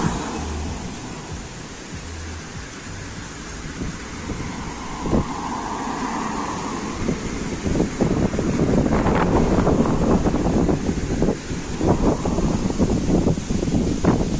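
Outdoor road sound: steady traffic noise with wind buffeting the microphone, the gusty rumble growing louder from about halfway through.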